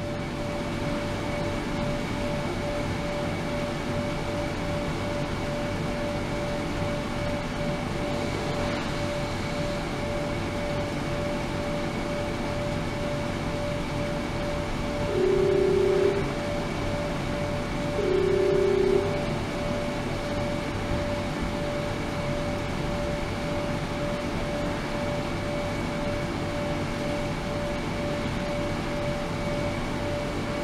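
Ultrasonic cleaning tank running: a steady hiss of cavitating water with a steady hum-like tone over it. Two short low beeps sound about fifteen and eighteen seconds in.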